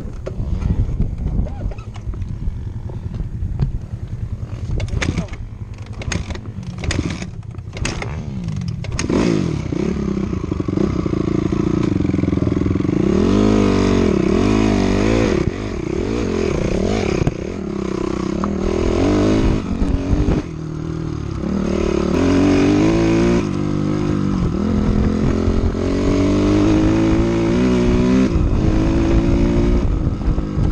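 Off-road vehicle engine at low revs under a heavy rumble, with a run of sharp knocks a few seconds in. From about nine seconds the engine revs up and down repeatedly as it accelerates along the dirt trail.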